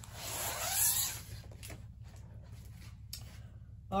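A diamond painting canvas and its plastic cover film being moved and rustling, a swish that swells to about a second in and then fades, followed by a couple of faint taps.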